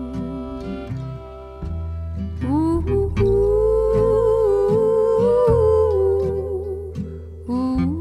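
Acoustic string band playing a slow tune: upright bass plucking low notes under strummed acoustic guitar and fiddle. A long, wavering melody line swells in about two and a half seconds in, holds, and falls away near the end.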